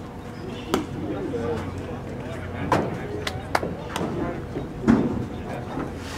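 A baseball pitch arriving at the plate with one sharp pop under a second in, followed by people's voices calling out and several more short, sharp knocks or claps.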